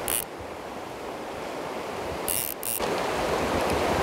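River water running over a shallow, rocky riffle: a steady rush of water, with short louder hisses near the start and again about two and a half seconds in.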